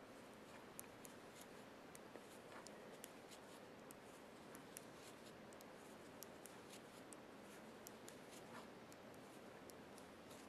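Faint, irregular clicking of metal knitting needle tips tapping together while stitches are purled, about two or three small clicks a second over a quiet hiss.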